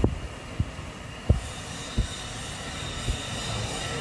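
Portable LPG gas burner on a small cylinder running with a steady hiss and rumble, broken by a few light knocks.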